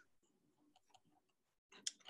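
Near silence, with a few faint scattered clicks.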